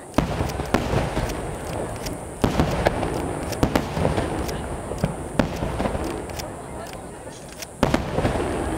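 Aerial firework shells bursting in quick succession: a dozen or so sharp booms at irregular intervals over a continuous low rumble and crackle of burning stars.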